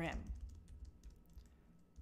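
Faint computer keyboard typing: a quick, uneven run of light key clicks.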